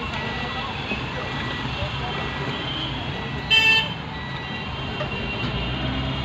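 Steady city traffic noise heard from inside a car crawling through traffic. A vehicle horn sounds once, briefly, about three and a half seconds in.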